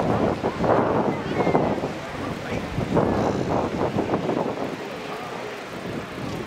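Busy open-air crowd ambience: indistinct chatter of many passers-by, with wind gusting on the microphone, the gusts easing off in the last second or two.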